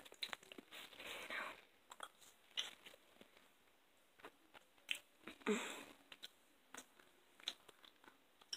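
Faint close-up chewing of a gummy fruit snack with a liquid centre: scattered soft wet clicks and smacks of the mouth, with two short breathy sounds, one about a second in and one a little past the middle.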